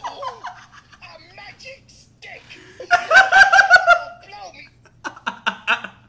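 A man laughing hard in bursts. The loudest burst, about three seconds in, is a rapid run of high 'ha' pulses, and a shorter burst follows near the end.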